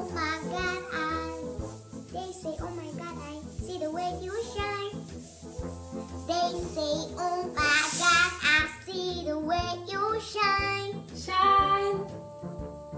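A young girl singing a pop song aloud in phrases, over background music.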